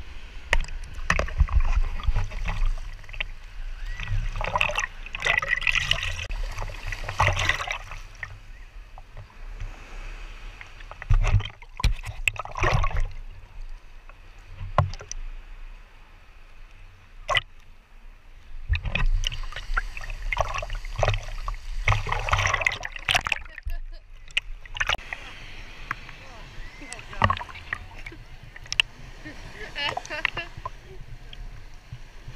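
Seawater sloshing and splashing against a camera held at the waterline in shallow surf, with a low rumble as waves buffet it. It comes in irregular loud surges with quieter gaps between them.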